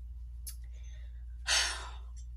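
A woman's single breathy sigh about one and a half seconds in, after a faint click near the start, over a steady low hum.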